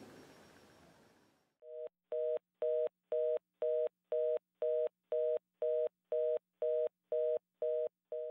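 Telephone fast busy (reorder) tone: a two-note tone beeping on and off about twice a second, the signal that a call cannot be put through. It starts about a second and a half in, after faint room sound fades out.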